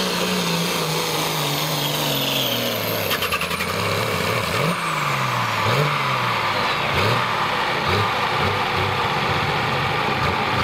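Turbocharged diesel engine of a John Deere pulling tractor winding down at the end of a pull: the engine note falls steadily as it comes off full throttle, then a few short throttle blips while it idles. A high turbo whistle glides down in pitch as the turbocharger spools down.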